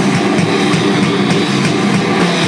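Metalcore band playing live: distorted electric guitars over a drum kit, loud and dense.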